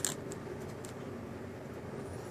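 Faint clicks and crinkles of a plastic-sleeved trading card being handled, a small click at the start and a couple of fainter ticks within the first second, over steady low room noise.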